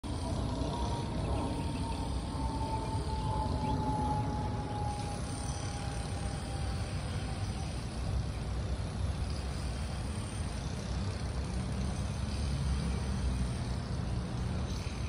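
Steady low rumble of distant road traffic, with a faint tone that slowly falls in pitch during the first half, like a vehicle passing by.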